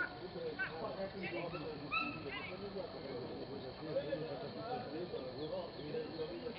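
Indistinct, distant voices talking, with short high bird chirps over them in the first half.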